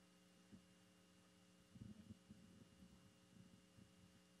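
Near silence: a steady low electrical hum in the sound system, with faint scattered low knocks and rustles, most of them about two to three seconds in.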